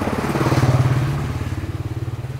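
A motorcycle engine running with a fast, even putter, growing louder to a peak just under a second in and then fading as it passes by.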